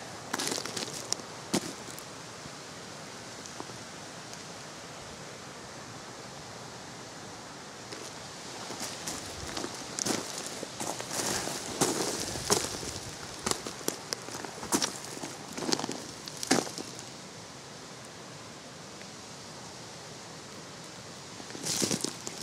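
Footsteps crunching and clinking on loose shale scree, irregular and mostly between about 8 and 17 seconds in, over a steady background hiss.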